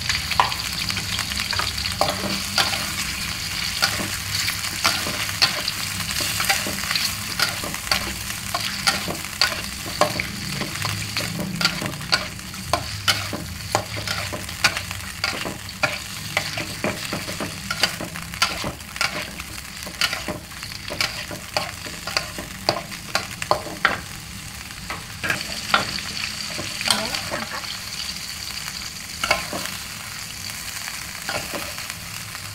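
Squid rings sizzling in an aluminium wok while a metal spatula stirs them, with many sharp scrapes and taps of metal on the pan over a steady frying hiss. This is a short first sauté to draw the dirt out of the squid.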